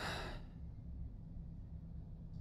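A man's short breath, a quick sigh or gasp close to the microphone, then only a low steady background hum.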